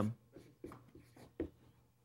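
Dry-erase marker writing on a whiteboard: a handful of short, quiet strokes and taps.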